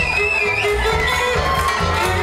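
Live acoustic band playing: a violin carries the melody over double bass and drums that keep a steady beat of about two pulses a second.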